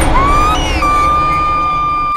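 A woman's long, high scream that rises just after the start, breaks briefly higher, then holds at a near-steady pitch, over background music.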